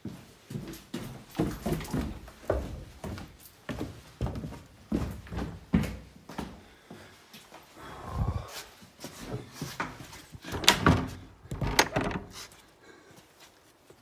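Irregular footsteps and knocks on the boards of a small wooden hut, then its wooden plank door pushed open about eight seconds in, with a cluster of louder thuds a few seconds later.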